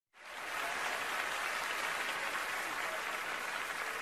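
Audience applauding steadily, fading in at the very start.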